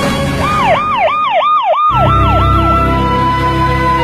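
Ambulance siren in a fast rising-and-falling yelp, about three cycles a second, fading out near three seconds in, over background music.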